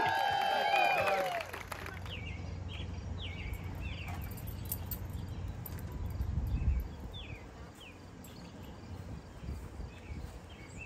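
A group's voices carry on for about the first second and then cut off. After that there is outdoor ambience: a bird repeats short, falling chirps over a low rumble, which eases off around two-thirds of the way through.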